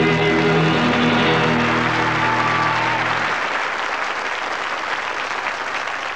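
An audience applauds at the end of a live country song, while the band's final held guitar chord rings and stops about three seconds in. The applause carries on alone after that, slowly fading.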